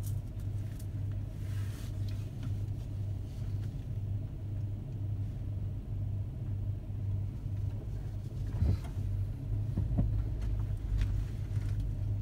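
Car engine idling, heard inside the cabin as a steady low hum; about nine seconds in the rumble grows as the car pulls away.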